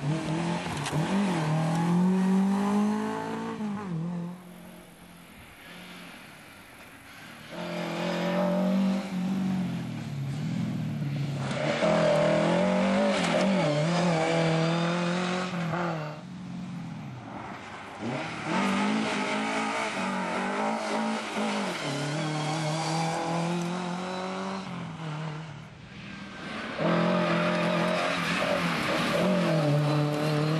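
Lada rally cars driven flat out past the roadside, their engines revving up through the gears with short drops at each shift, over tyre noise on the loose surface. The sound comes in several passes, each fading to a quieter lull before the next car is heard, about five seconds in, around sixteen seconds and near twenty-six seconds.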